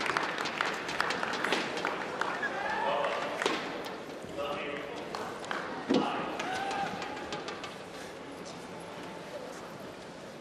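Arena crowd noise with scattered voices and calls and sparse clapping that thins out, and a single thud about six seconds in.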